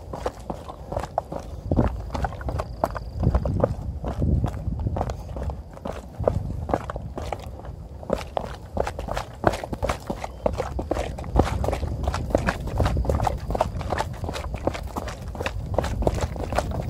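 A runner's footsteps on a concrete hill path: quick, steady footfalls, with a low rumble underneath.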